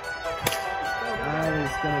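One sharp crack about half a second in: a plastic wiffle ball bat hitting the ball for a base hit, over steady background music.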